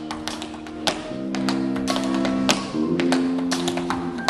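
Tap shoes striking a wooden stage floor in quick, irregular strings of sharp taps, over a live band's held bass and piano notes that change about a second in and again near the three-second mark.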